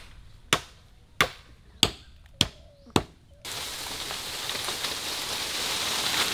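A blade chopping into a green bamboo stem at its base: five sharp, evenly spaced strokes about 0.6 seconds apart. Then, from about halfway, a loud steady rustling of bamboo leaves as a stem falls through the foliage.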